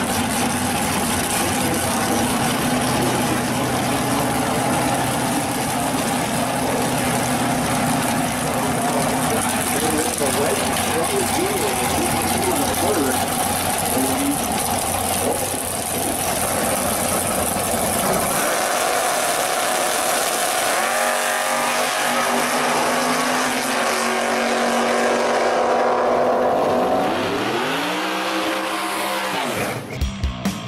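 V8 drag car engines at full throttle through a tire-spinning burnout, with a dense roar of engine and tire noise. After about eighteen seconds this gives way to a single engine revving, its pitch climbing, then rising and falling sharply near the end.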